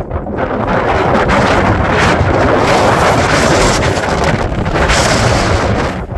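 Strong wind buffeting the microphone: a loud, steady rush of wind noise that builds over the first second and holds.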